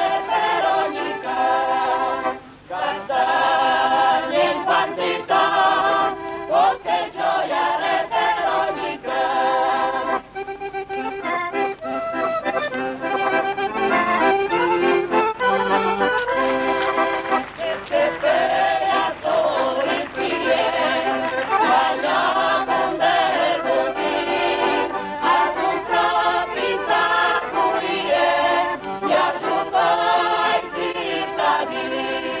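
A village choir of mixed voices singing a folk song together, accompanied by an accordion, with only short breaks between phrases.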